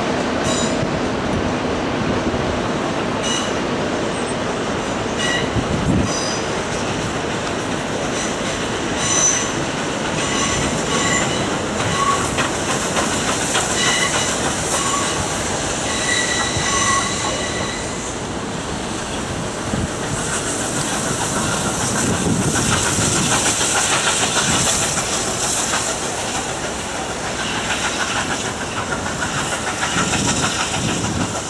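Heritage train of red passenger carriages rolling over the track, wheels clattering and flanges squealing in short high tones through the first half. From about twenty seconds in, a loud steam hiss rises as a Victorian Railways K class steam locomotive passes.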